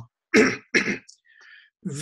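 A man clearing his throat in two short bursts about half a second apart.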